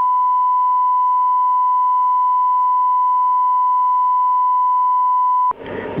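Broadcast line-up test tone: a single steady, loud pure tone that cuts off suddenly near the end.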